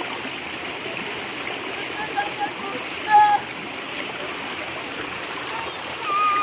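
Shallow rocky stream running steadily, a constant rush of water. A few brief voices call out over it about two seconds in, with one louder call about three seconds in.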